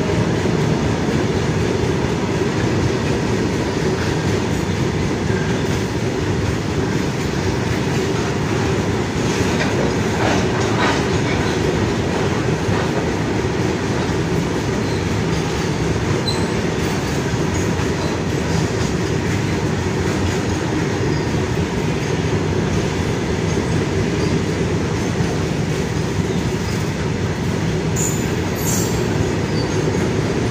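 A long freight train of open goods wagons passing close by at speed: a steady loud rumble and rattle of wheels running over the rails, with a few brief sharper, higher sounds about ten seconds in and near the end.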